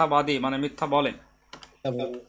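A man speaking, broken near the end by a short gap with a few faint computer clicks as the on-screen page scrolls down.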